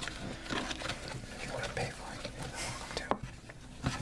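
A hand mixing butter into a flour mixture in a baking pan: irregular soft squishing and rustling with small ticks, and one sharper click a little after three seconds in.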